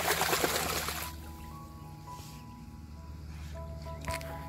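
A dog splashing in a swimming pool, loud for about the first second and then dying down, over background music with steady held notes.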